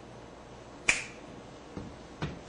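A single sharp finger snap about a second in, with a brief ringing tail, followed by a faint thud.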